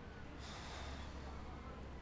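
A man's short breath drawn in through the nose about half a second in, lasting under a second, over a low steady background rumble.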